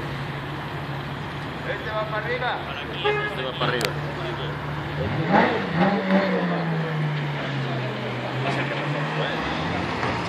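Sports car engines running at low speed, with one blipped quickly in a short rev about five seconds in, its pitch then easing down slowly as the car rolls on.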